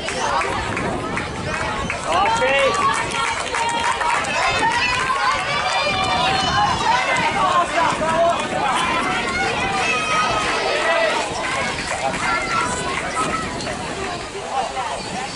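Several spectators shouting and cheering, voices overlapping, louder from about two seconds in.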